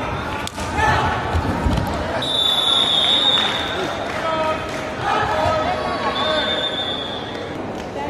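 Kabaddi players shouting during a raid, with feet and bodies thudding on the foam mat; several thuds come in the first two seconds. A long, shrill, steady high tone sounds about two seconds in, and a shorter one near six seconds.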